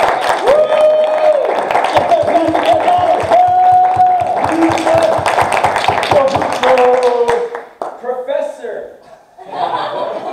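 An audience clapping, with several long held whoops over the applause; the clapping stops about seven seconds in and gives way to chuckles and a few voices.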